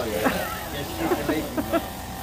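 Handheld electric massager held against a man's scalp, running with a steady buzz under brief indistinct voices.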